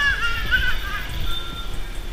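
Young children's high-pitched voices, short calls and squeals mostly in the first second, over a low rumble.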